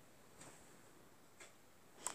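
Near silence with a faint tick about once a second.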